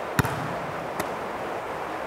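A volleyball struck in an underhand pass: one sharp smack about a quarter second in, then a softer hit about a second in, over the hollow room tone of a gymnasium.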